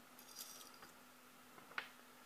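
Near silence, with faint handling rustle in the first second and one soft click near the end.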